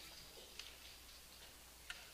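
Near silence: room tone with a low hum and a few faint clicks, the sharpest one just before the end.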